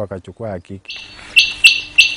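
Quail calling: three sharp, high notes about a third of a second apart, starting a little over a second in.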